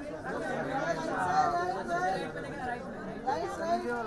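Several people's voices talking and calling out over one another: crowd chatter.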